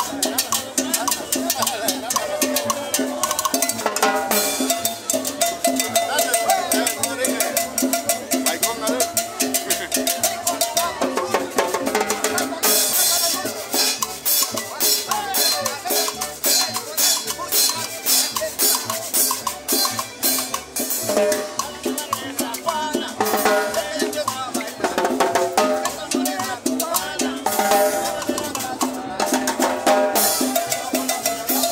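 A live street band playing Latin dance music: accordion and guitar over a drum kit with cymbals keeping a steady, even beat. The sound is thin, with almost no bass.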